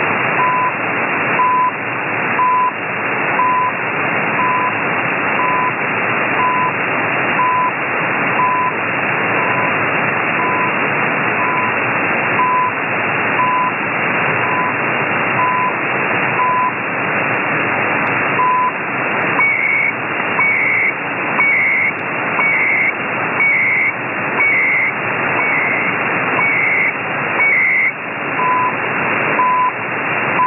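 CHU Canada shortwave time signal on 7850 kHz received over heavy static: a short 1 kHz beep marks each second. About 18 seconds in one beep is skipped, then for about nine seconds each second brings a higher-pitched warbling data burst, the station's digital timecode, before the plain beeps return.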